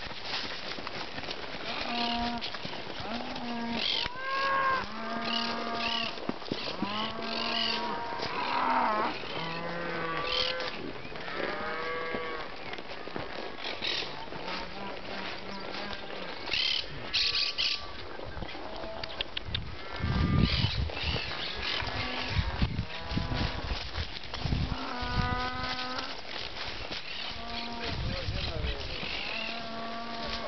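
Cattle mooing again and again, several animals calling and overlapping, with a stretch of low rumbling about two-thirds of the way through.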